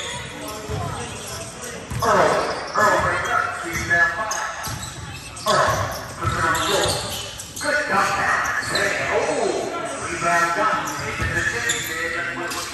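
Basketball game in a gym: the ball bouncing on the hardwood court while players call out to each other, their voices echoing through the large hall.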